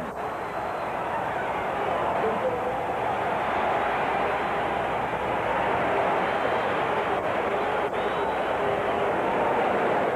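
Basketball arena crowd giving a steady din of many voices throughout play.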